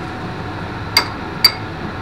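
A metal spoon clinking twice against a small ceramic dish, about half a second apart, each clink ringing briefly, over a steady background hum.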